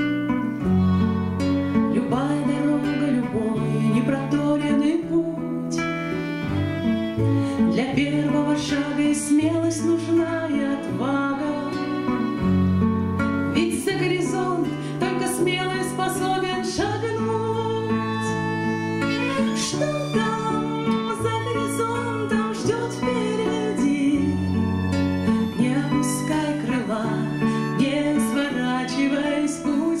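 A woman singing a slow song to her own strummed acoustic guitar, with a violin playing a bowed line alongside. This is live, unamplified acoustic sound.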